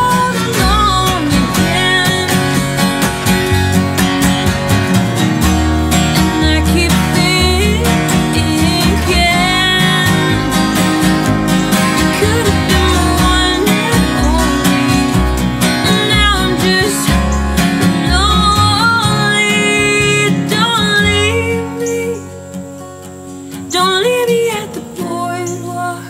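Live acoustic folk-pop song: a woman singing over two strummed acoustic guitars and a plucked upright bass. About two seconds before the end the bass drops out and the playing goes quieter, then the full band comes back in.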